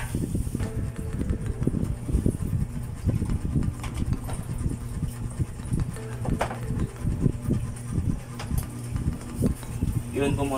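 Irregular low thumps and rumble throughout, with faint background music underneath.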